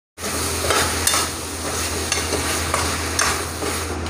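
A metal spoon stirring diced potato and ridge gourd frying in a nonstick pan on a gas stove. The pan sizzles steadily, with about five scraping strokes of the spoon against the pan.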